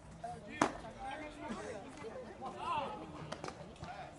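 A pitched baseball makes one sharp pop at home plate about half a second in, the loudest sound here; after it, spectators' voices call out.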